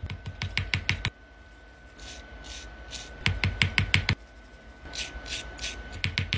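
Plastic dig-kit tool scraping and picking at a hard, chalky diamond-shaped block in quick strokes. The strokes come in three runs: one in the first second, one around the middle, and one near the end.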